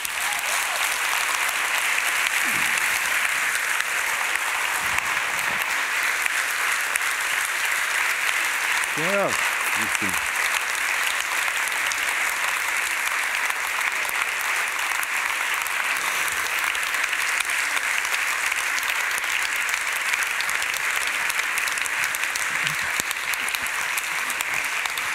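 Large audience applauding: the clapping starts suddenly and stays at an even level.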